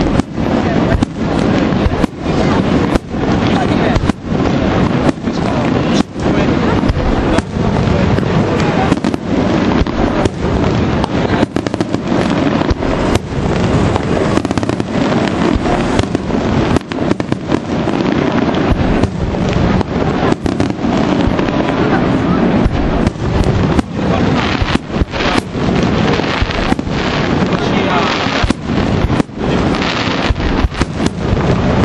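Aerial fireworks display: shells bursting in a dense, near-continuous barrage of bangs, many close together, with no pause.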